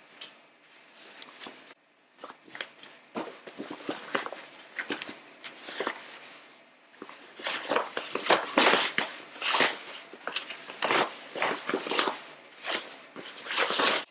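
Cotton fabric backed with stiff non-woven interfacing rustling in quick irregular bursts as a sewn fabric basket is turned right side out by hand, growing louder about halfway through.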